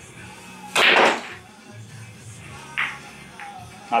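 A loud, sharp strike about a second in as a pool cue hits the cue ball hard with high right English for a breakout shot. A fainter click follows near three seconds as balls collide. Faint background music plays throughout.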